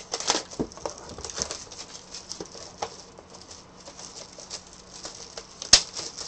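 A cardboard trading-card hobby box being opened and a wrapped card pack handled: quick, irregular crinkling and rustling, with a sharp click near the end.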